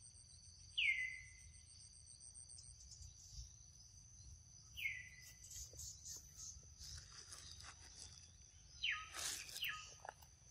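A steady high insect drone in the forest, with a short high call that falls sharply in pitch heard about a second in, again about five seconds in, and twice close together near the end. Soft rustling of grass and leaves comes in the middle, as the young macaque leaps off its stone.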